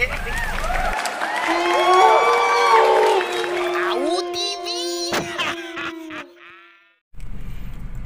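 Channel intro jingle: overlapping gliding and held tones, one of them held for several seconds, with a few sharp clicks, fading out to silence about seven seconds in. It is framed by the low hum of the car cabin with laughter and voices in the first second and again near the end.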